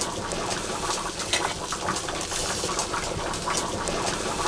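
Potatoes and meat cooking in a pan on a stove, with a steady sizzling and bubbling full of fine crackles.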